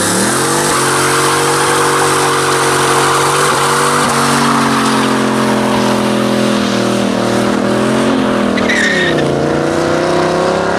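A car doing a burnout: the engine is revved up and held at high revs while the rear tyres spin and squeal. Near the end the revs dip and climb again as the car pulls away.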